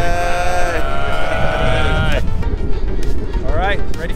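Several men's voices shouting one long, drawn-out "Heeey!" together for about two seconds. It is followed by a steady low rumble of outdoor noise and a man's voice starting up near the end.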